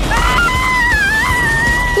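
A girl's long, high-pitched scream, held for nearly two seconds with a waver in the middle, over background music.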